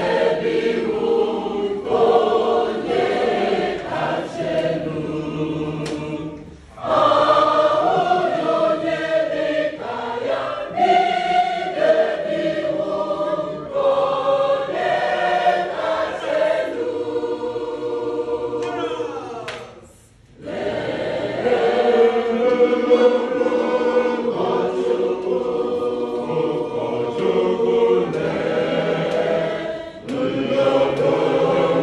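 A church choir singing an Igbo hymn together. The singing breaks off briefly twice, around six and a half seconds and again just before twenty seconds in, then carries on.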